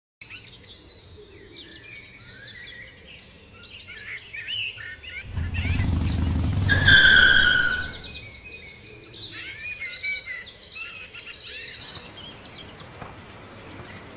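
Small birds chirping and singing in quick, repeated phrases. In the middle a louder low rumble swells for a few seconds, with a held high tone for about a second at its peak.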